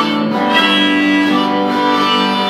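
Harmonica cupped to a handheld microphone, playing held notes over electric guitar accompaniment in a live band.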